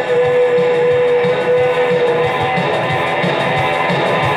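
Rock music with electric guitar over a steady beat; a single long held note ends about two seconds in.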